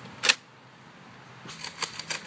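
A Nerf foam-dart blaster firing once about a quarter second in: a short, sharp pop of air. A few light plastic clicks follow near the end.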